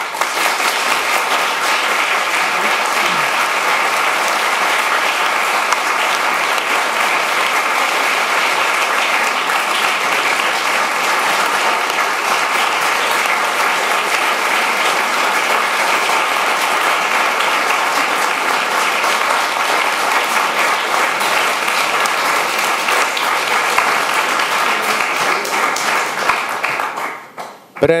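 Audience applause, a dense, even clapping held steady, dying away about a second before the end.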